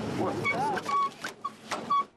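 An inflatable vinyl figure being stamped on underfoot, giving a run of short, high squeaks, some sliding in pitch, between the thuds of the foot.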